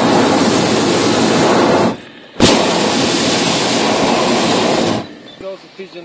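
A hot-air balloon's propane burner firing in two blasts, each starting and stopping abruptly. The first lasts about two seconds; after a short pause the second runs about two and a half seconds and cuts off. A voice starts near the end.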